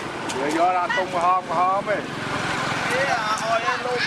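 People talking, with a few short sharp clicks, over steady outdoor background noise.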